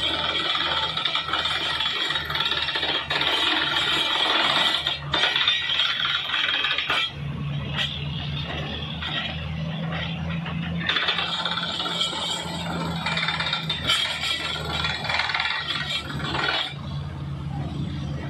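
Truck-mounted borewell drilling rig drilling, with a steady rattling clatter from the drill in the bore as compressed air blows rock cuttings up out of the hole. The rig's engine runs underneath as a steady low hum. The clatter eases briefly twice.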